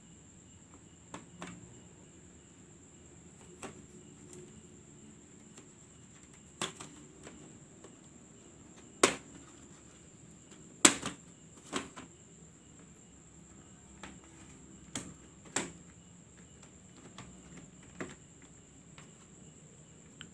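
Plastic snap clips of a Dell Inspiron N4050's palmrest cover clicking loose as its edge is pried up by hand: about ten sharp, separate clicks spread across the stretch, the loudest two near the middle.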